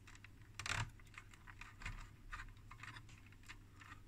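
Faint, scattered small clicks and light rattles of fingers handling wiring and a coiled metal cable sheath inside an opened oscilloscope chassis, with one louder click under a second in.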